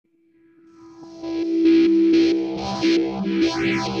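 Song intro fading in from silence: effect-processed, distorted electric guitar over a steady beat, with a sweeping effect that rises and falls near the end.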